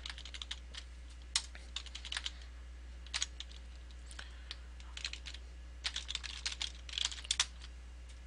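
Keystrokes on a computer keyboard, typed in short irregular bursts with pauses between them, as a web address is entered.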